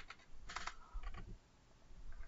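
Computer keyboard keystrokes: a few key presses in two short clusters about half a second apart, finishing a typed command with the Enter key.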